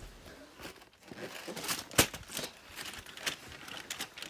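Cardboard crinkling and tearing as an advent calendar door is pushed open: a run of short rustles and clicks, with one sharp crack about halfway through.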